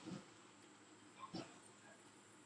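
Near silence: faint background with one brief, faint sound about a second and a half in.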